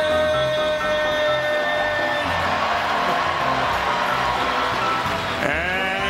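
Arena announcer's long, drawn-out call of a player's name over the PA, held on one pitch for about two seconds. Then a crowd cheering over arena music, until the announcer starts speaking again near the end.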